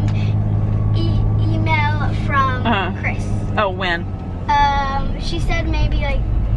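Voices talking inside a minivan's cabin over a steady low hum from the vehicle, with one short, drawn-out high-pitched voice a little past the middle.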